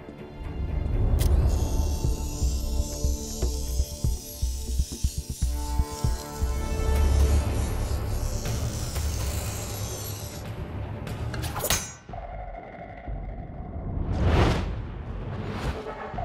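Dramatic film score with a heavy bass, with sound effects laid over it: a sharp crack about a second in, then a long hiss, another crack later on, and two whooshes near the end.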